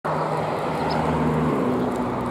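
Steady low hum of a motor vehicle engine, whose pitch steps up about one and a half seconds in. One short, faint, high chirp, likely from a Eurasian tree sparrow, comes about a second in.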